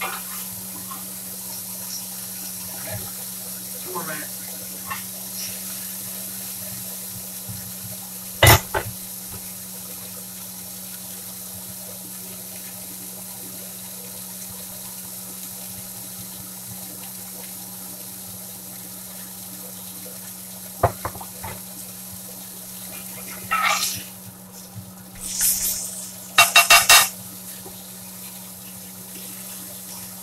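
Meat and onions sizzling in a cast iron skillet: a steady hiss, broken by sharp clinks and scrapes of a metal spatula against the pan. The loudest is a single knock about eight seconds in, and there is a quick cluster of strokes near the end.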